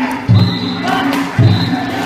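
Danjiri float's on-board taiko drum struck twice, about a second apart, over shouting from the crowd of pullers.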